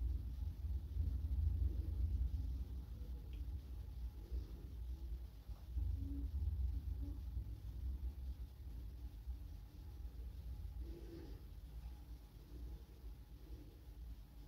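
Quiet room tone: a low rumble under a faint steady hum, with no distinct event.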